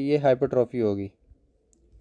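A man's voice speaking for about a second, then a pause with a single faint click.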